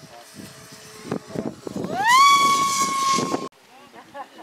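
Radio-controlled model aircraft engine throttling up: a high whine rises in pitch about two seconds in, then holds steady over a hissing rush, and cuts off abruptly near the end. Faint voices before it.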